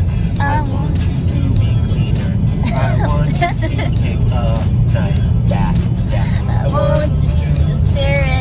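A song playing, with a man and a woman singing along, over the steady low rumble of a moving car.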